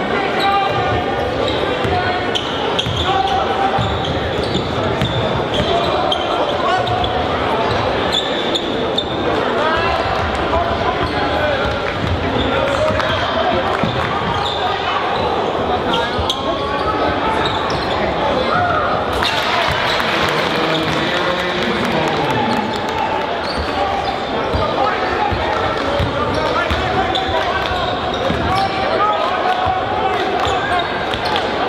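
Basketball dribbling on a hardwood gym floor under steady crowd chatter and shouting that echoes around the gym. About two-thirds of the way through, the crowd noise gets louder and brighter.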